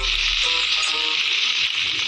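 Cartoon sizzling sound effect, a steady high hiss like food frying in a pot, cutting off shortly before the end, with faint music underneath.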